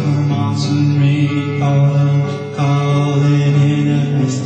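Guitar music with long held low notes, a chant-like passage between the song's sung lines.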